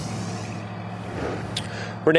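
Steady outdoor background noise with a low hum, picked up on a live field microphone before the reporter speaks.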